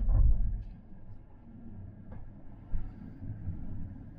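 Car interior noise while driving: a steady low rumble of engine and tyres on the road, louder for the first half second.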